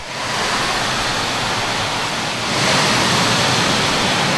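Torrential rain pouring down, a steady hiss that gets a little louder about two and a half seconds in.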